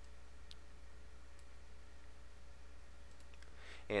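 A few faint computer-mouse clicks over a steady low electrical hum on the recording.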